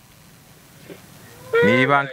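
Low background hiss for about a second and a half, then a person's voice in one drawn-out vocal sound that falls in pitch near the end.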